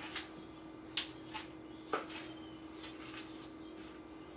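Light handling sounds of a person moving about and picking up a phone: three short knocks and taps about one, one and a half, and two seconds in, over a faint steady room hum.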